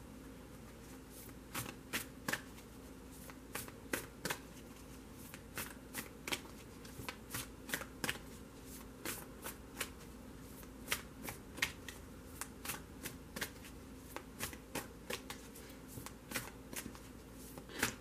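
A deck of tarot cards shuffled by hand: a long run of short, irregular slaps and snaps as the cards strike one another, about two or three a second.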